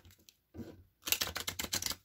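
Tarot cards being shuffled in the hands: a quick run of card clicks about a second in, lasting most of a second.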